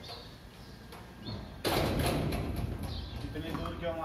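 A sudden loud knock about one and a half seconds in, followed by a second or so of rattling noise that fades; a short voice comes near the end.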